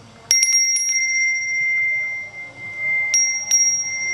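Balinese priest's hand bell (genta) rung during Hindu prayer: a quick flurry of strikes just after the start, then a long steady ring, with fresh strikes near the end.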